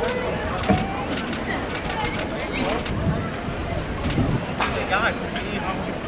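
People talking nearby in short snatches over a steady low rumble, with a few light clicks.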